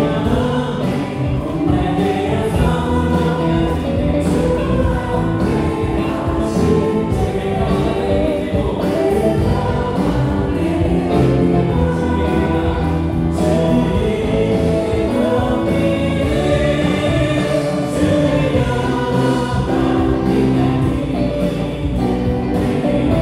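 Live church praise band playing a worship song with a group of voices singing along: electric guitar, bass guitar, keyboards and drums.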